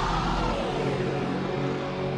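Electronic dance music from a DJ mix in a transition: a noisy swelling sweep fades out in the first half-second, and steady synth tones come back in near the end.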